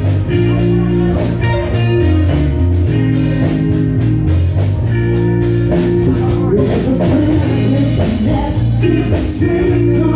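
A live band playing a rock song, with amplified electric guitar and a drum kit keeping a steady beat.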